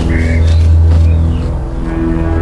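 Dramatic background score: a loud, sustained low drone with a few short high notes over it, a tense musical cue.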